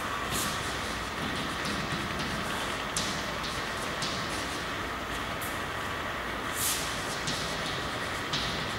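Chalk being written on a blackboard: a few short, scratchy strokes and taps at irregular intervals over a steady background hiss.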